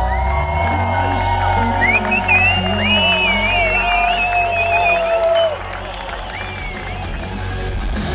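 Live rock band playing through a festival PA, with an electric guitar lead of held, bent notes with vibrato over a steady low end. The music drops quieter about five and a half seconds in.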